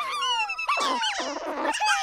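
Cartoon slug creatures chattering in squeaky, high-pitched calls that swoop up and down in pitch, several in quick succession, over held background music notes.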